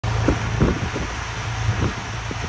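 Wind buffeting the microphone on the bow of a motor cruiser under way, over the steady low drone of the boat's engines.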